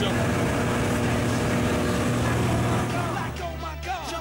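Light aircraft engine and rushing air, loud and steady, heard from inside the cabin. The noise gives way to music about three seconds in.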